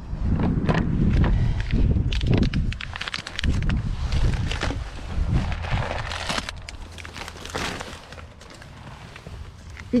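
Handling noise as someone climbs into a car with bags: rustling, clicks and knocks, with low rumbling buffets on the microphone for the first few seconds.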